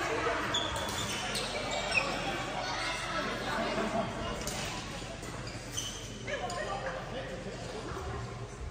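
Badminton hall ambience in a large hall: background voices with occasional sharp cracks of rackets hitting shuttlecocks, the loudest about two seconds in.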